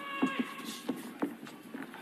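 A few irregular thuds of boxing punches landing on gloves and arms in the ring, over faint arena background. A thin steady tone fades out in the first half.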